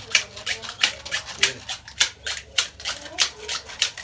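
Green carrizo (giant cane) being split lengthwise with a knife into weaving strips: a fast, uneven run of sharp crackling snaps, about five or six a second, as the blade works along the stalk.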